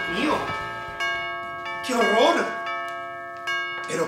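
A doorbell chiming repeatedly, its bell tones piling up and struck again several times in quick succession, in an insistent ringing style. Background music is fading out underneath.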